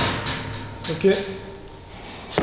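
A single sharp metallic knock, with a short ring in the room, as hands catch the steel pull-up bar of a gym rig.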